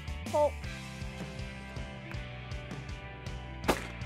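A single shotgun shot near the end, from a Remington 870 pump-action shotgun fired at a hand-thrown clay target, heard over steady background music.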